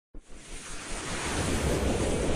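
Logo-intro sound effect: a rushing whoosh of noise that starts a moment in and swells steadily louder, with a low rumble beneath it.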